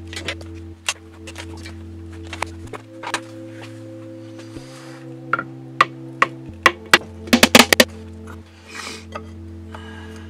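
Background music of held chords that change every couple of seconds, over sharp clinks and knocks of hand tools on a Subaru EJ25 engine block. The loudest is a quick run of hammer taps about seven to eight seconds in.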